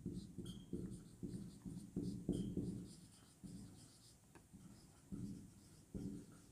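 Marker pen writing on a whiteboard: a faint run of short, irregular strokes with pauses between them.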